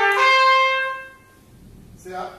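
Solo trumpet ending a quick phrase: a last note held for about a second, which then dies away.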